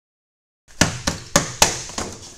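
Dead silence for the first half second, then an empty cardboard parts box shaken hard, slapping in four sharp smacks about a quarter second apart, with papery rustling between them.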